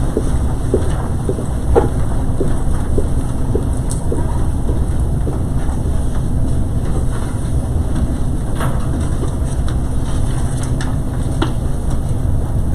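Steady low rumble of room noise with scattered small clicks and taps, the sound of a council chamber in a pause between agenda items.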